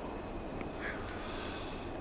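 Outdoor evening ambience: a steady low background rumble and hiss with a few short, high insect chirps scattered through it.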